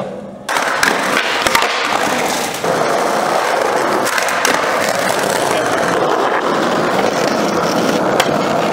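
Skateboard wheels rolling loudly over concrete, a steady rushing roll, with sharp clacks of the board about half a second and a second and a half in.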